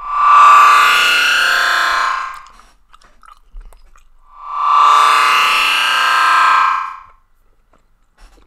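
A loud musical sound clip or effect played back twice in a row. Each play swells up quickly, holds for about three seconds, then fades, with a short quiet gap between the two.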